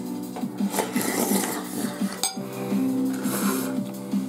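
A spoonful of soft rice porridge slurped and chewed in two noisy stretches, with one sharp click a little over two seconds in, over background music.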